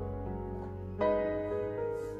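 Background music, played on piano or keyboard, with held notes; a new chord comes in about a second in.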